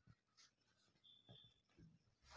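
Near silence, with faint rustles and light clicks from silk blouse fabric being handled.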